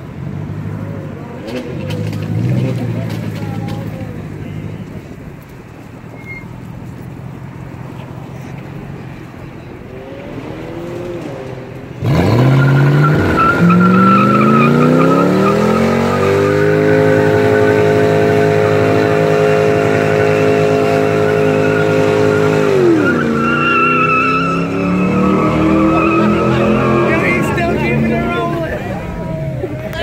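Lexus LS 400's V8 doing a burnout: a low rumble, then about twelve seconds in a sudden loud rise to high revs, held steady for several seconds while the rear tyres spin and squeal. Near the end the revs drop briefly, then climb again.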